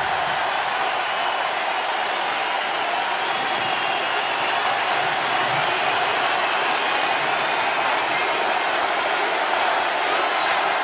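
Large arena crowd cheering and applauding in a steady, sustained roar.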